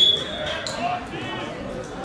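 Referee's whistle blown once as a short steady blast at the start, over voices of players and onlookers.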